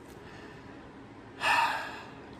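A man's short audible breath: a half-second rush of air about one and a half seconds in, fading away.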